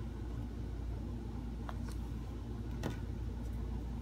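Steady low background hum, with a few faint clicks about halfway through and again near three seconds in as the shoe and its laces are handled.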